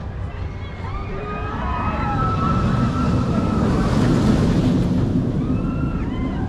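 Star Trek: Operation Enterprise roller coaster train running along its steel track. Its rush swells to the loudest point about four seconds in and then eases, with high wavering tones over it.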